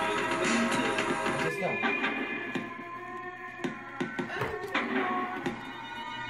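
Music playing from a vinyl record on a portable suitcase record player. About a second and a half in, the music drops in level and scattered sharp clicks come through.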